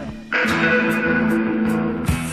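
Instrumental passage of a rock song led by electric guitar, with sustained chords over bass. The music dips briefly just after the start, then comes back in full.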